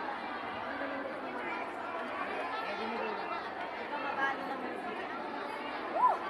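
Crowd of many people chattering at once, a steady hubbub of overlapping voices with no single speaker standing out.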